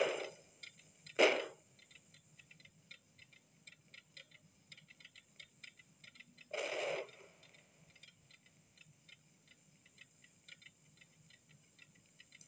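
Morse telegraph apparatus clicking in quick, irregular runs of ticks, with a few louder thuds near the start and one about halfway through.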